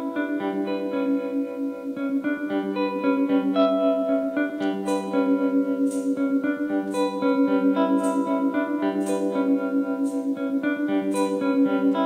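Hollow-body electric guitar playing a picked introduction with ringing, sustained notes. About five seconds in, a tambourine joins, struck roughly once a second.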